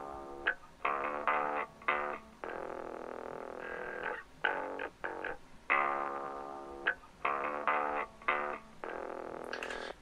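Song intro playing back: clean electric and acoustic guitar parts under a filter that dulls and muffles them, plucked notes and chords in a phrase that repeats about halfway through, joined by a bass guitar.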